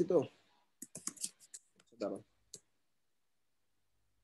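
Typing on a computer keyboard: a quick run of about a dozen key clicks over roughly two seconds, then it stops abruptly.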